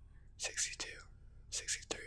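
A man whispering, counting numbers aloud in two short breathy bursts.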